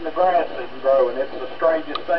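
Voice traffic from an amateur repeater net, heard over the speaker of a Yaesu FT-2500M 2-meter FM transceiver: one voice talking in short phrases, sounding thin, without low tones.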